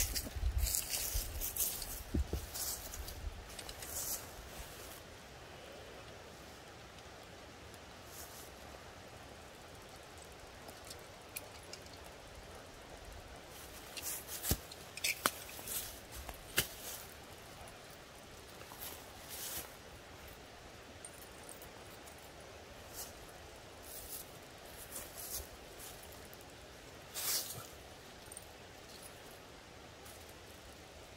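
Faint, scattered rustling and crackling of dry leaves and pine needles on a forest floor, coming in short clusters. Wind buffets the microphone with a low rumble in the first few seconds.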